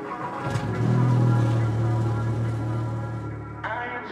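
Background music playing over a car engine being started with the key: a sudden start about half a second in, then a steady low hum that fades near the end. The engine is the MK7 Golf R's turbocharged 2.0-litre four-cylinder.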